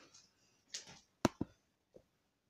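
A soft rustle, then two sharp clicks close together, with quiet around them.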